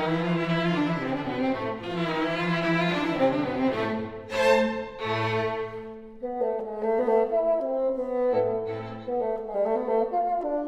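A bassoon and string quartet playing a classical chamber piece together, with full, sustained string and bassoon lines. A loud accented chord comes about four and a half seconds in, after which the texture thins into shorter, more separated notes.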